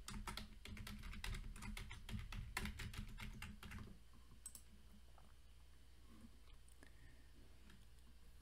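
Typing on a computer keyboard, a quick run of keystrokes that stops about four seconds in, after which only a faint low hum remains.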